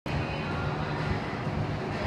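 Steady low rumble of background room noise, with no distinct impacts or footfalls standing out.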